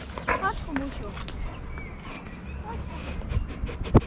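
Two large dogs on chain leashes walking on paving: light chain clinks and shuffling, with faint voices in the background, and a sharp knock near the end as a dog's head bumps the camera.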